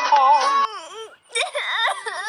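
Music cuts off about a third of the way in. A high child's voice then cries and wails, its pitch rising and falling in long arcs, with a brief break just past the middle.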